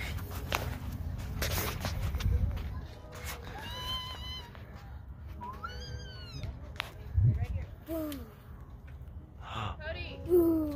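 A baby's short high-pitched squeals, three rising-and-falling cries about two seconds apart, over a low rumble on the microphone.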